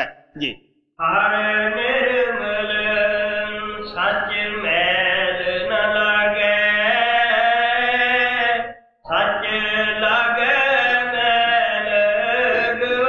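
A man's voice chanting a devotional verse in long, held notes: one long phrase, a brief breath, then a second phrase.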